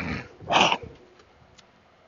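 A man clearing his throat: two short harsh rasps about half a second apart, the second louder.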